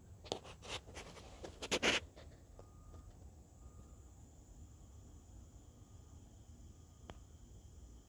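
A quick run of clicks and rustles in the first two seconds, then quiet room tone with a faint steady high whine, and a single click near the end.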